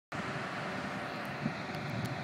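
Steady, even drone of distant heavy machinery at a night-time bridge-moving site.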